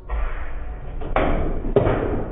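Foosball table in play: ball and rods clattering, with two hard knocks, one a little over a second in and one near the end.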